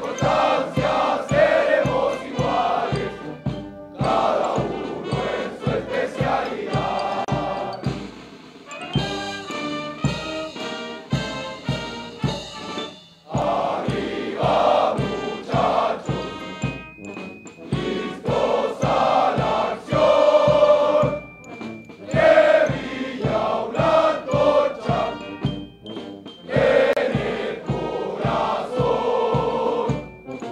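A large mixed chorus of soldiers' voices singing in unison, over a steady low beat about twice a second.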